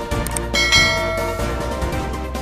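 A bell chime sound effect rings out about two-thirds of a second in, with several bright tones fading within a second, over background music. A couple of short clicks come just before it.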